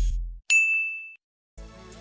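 A single bright ding sound effect: one sharp strike about half a second in, ringing on one high tone and cut off abruptly after about two thirds of a second. The tail of background music fades out just before it.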